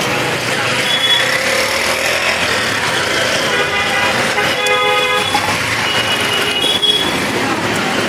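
Steady street traffic noise with a vehicle horn honking about four to five seconds in, held for about a second, and a few short high beeps or tones elsewhere.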